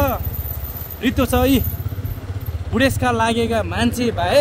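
Speech in two short bursts over the steady low rumble of a motorcycle running along the road.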